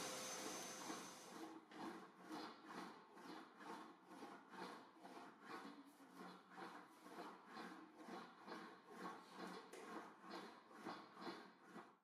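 Faint, even rhythm of sheet metal being rolled back and forth through an English wheel, about two soft passes a second. The wheel is set at medium tension and the panel is run in long, soft strokes to smooth it into a gentle crown.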